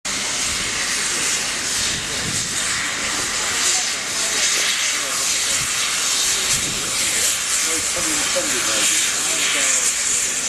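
Great Western steam locomotives in steam, giving off a steady, loud hiss, with people talking faintly underneath.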